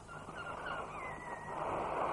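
A high animal call: a few short rising notes, then a longer falling one. A rushing noise swells up under it about halfway through.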